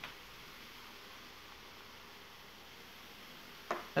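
Faint, steady fizzing hiss of baking soda foaming as it is stirred into near-boiling water in a plastic measuring jug.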